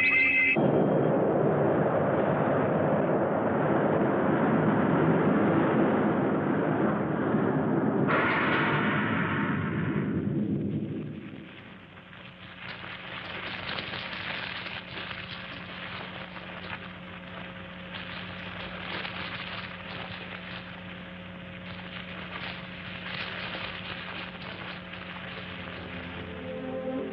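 Film sound effect of a big explosion as the spaceship fleet crashes: a loud, dense blast for about eleven seconds with a brief higher tone near eight seconds in, then dying down to a quieter crackling over a steady low hum.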